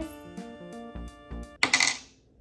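Background music, then near the end a brief clatter of small hard plastic as a tiny toy cream-cheese tub is set down on the table.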